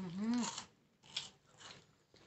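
A closed-mouth hummed "mmm" of tasting for about the first half second, then a few short crunches of chewing a crisp snack with the mouth closed.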